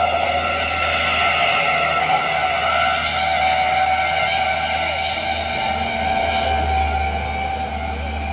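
A steady high drone of a motor running, with no break in its pitch, easing off slightly near the end.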